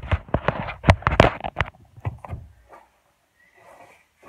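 A woman laughing hard and breathily close to the phone's microphone, in quick bursts that die away after about two and a half seconds.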